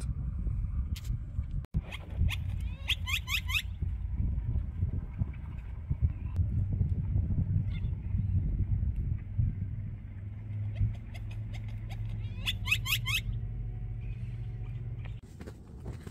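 Wind rumbling on the microphone, with blackbirds calling in two short runs of quick rising whistles, a few seconds in and again near the end. A steady low hum runs under the wind in the second half.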